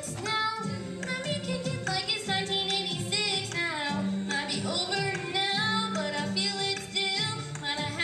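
A girl singing a solo pop melody into a handheld microphone, amplified, over an instrumental accompaniment with a repeating low bass pattern.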